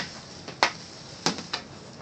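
Hockey stick blade knocking a hard plastic four-ounce FlyPuck as it is stickhandled on a shooting pad: three sharp clacks, the first about half a second in and the last two close together near the end.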